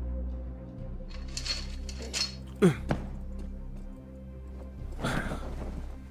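Metal folding cot frame clanking as it is opened out and set down: a few clinks, then one loud clunk with a short falling creak about two and a half seconds in. Near the end, a fabric sheet rustles as it is shaken out, over background music.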